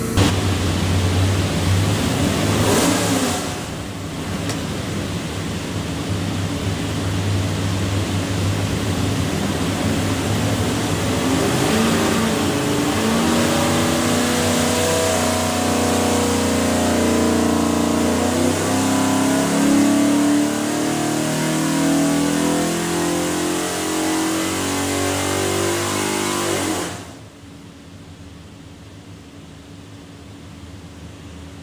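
347 cubic-inch stroker small-block Ford V8, carbureted with a hydraulic roller cam, running under load on an engine dyno during a power pull. It runs steadily at first, then its pitch climbs steadily through the rev range from about halfway through, and drops off sharply near the end as the throttle closes.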